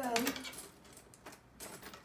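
Faint clinks of metal bangles and jewellery as hands rummage through a drawer, after a voice trails off in the first half-second.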